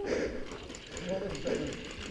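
Faint, distant men's voices calling out across the range, with no gunfire or impacts.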